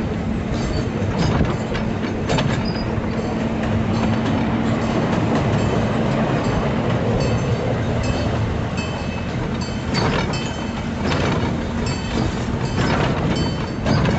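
Park miniature train running along its track, heard from an open passenger car: a steady rumble of the wheels on the rails, with occasional clacks.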